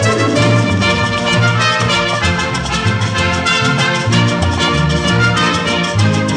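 Orchestral film score, brass playing over a quick, steady percussion beat.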